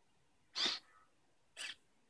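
Hobby servo motors in an InMoov robot's 3D-printed neck whirring in two short bursts, about a second apart, as the head turns right on command.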